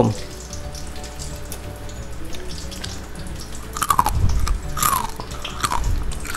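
Faint background music with held tones, then from about four seconds in a few crunching bites into the crisp coating of fried chicken.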